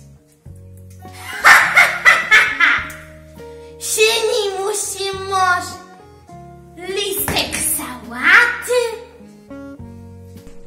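A girl laughing in several bursts over background music of steady held notes.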